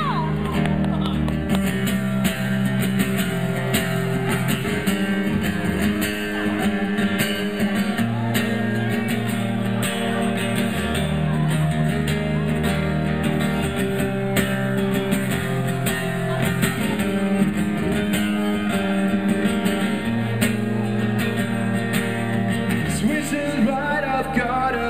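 Solo acoustic guitar strummed steadily, playing the instrumental intro of a punk-rock song, its chords changing every few seconds.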